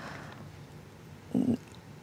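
Pause in speech: quiet room tone through a handheld microphone, with a brief low 'mm' hesitation hum from the speaker about one and a half seconds in.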